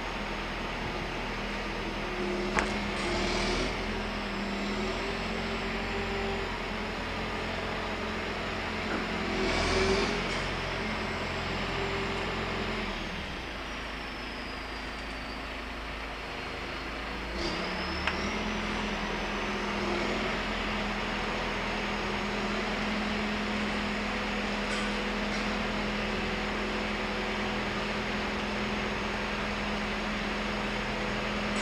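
Sand truck's engine running as the truck moves slowly, with a steady hum. There are two brief louder rushes about three and ten seconds in, and the engine drops off for a few seconds about halfway through before picking back up.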